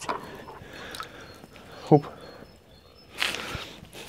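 Water splashing and sloshing in a plastic bucket as a hand reaches in to take out a fish, with a brief louder splashy rush about three seconds in.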